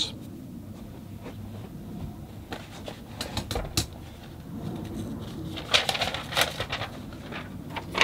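Quiet handling sounds: a few light clicks and taps, then paper rustling about six seconds in and again just before the end, as a sheet of printer paper is picked up and handled.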